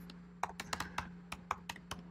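Typing on a computer keyboard: about ten quick keystrokes, starting about half a second in, as an e-mail address is entered.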